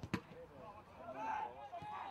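Distant shouts from players on a football pitch, heard as a short call about a second in. There is one sharp thud just after the start.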